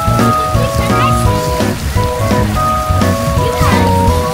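Background music with a bass line and held melody notes, over a steady hiss of water spraying from splash-pad fountains and splashing in a shallow pool.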